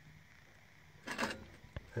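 Low room tone, then a brief rustling noise about a second in and a single sharp click just before speech resumes.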